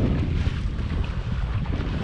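Wind buffeting the microphone on a small open boat moving slowly over choppy sea, with a steady low rumble underneath.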